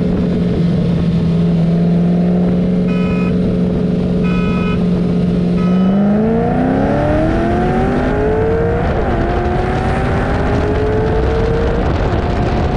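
Car engines cruising side by side at a steady pitch; about halfway through, three short beeps of a start countdown sound, and on the last one the engines go to full throttle, revving up with a steady climb in pitch and a short break in the climb about three seconds later. The loudest engine is the cammed 4.6-litre three-valve V8 of a 2007 Mustang GT.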